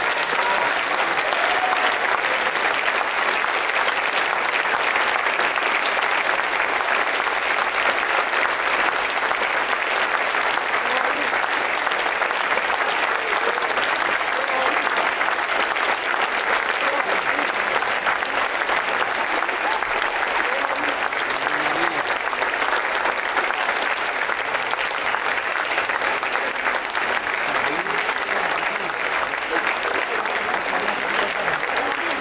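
An audience applauding steadily and at length, a dense, even clapping that keeps going without a break.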